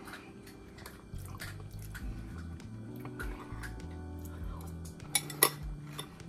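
A metal spoon clicking and scraping against a bowl while someone eats, with the loudest clinks about five seconds in, over quiet background music with held low notes.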